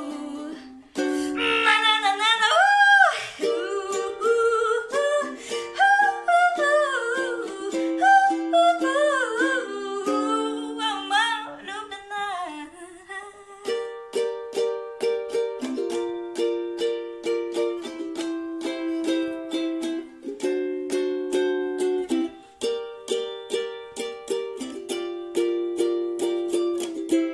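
A young woman singing to a strummed ukulele. About halfway through, the voice stops and the ukulele carries on alone with evenly strummed chords.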